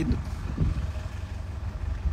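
Steady low rumble of a small smooth-drum road roller's engine running close by, on a job compacting a freshly laid gravel layer.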